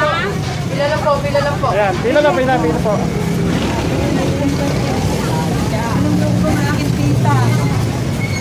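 People's voices talking for the first few seconds, over the steady low drone of a vehicle engine running nearby; the engine drone carries on under fainter voices.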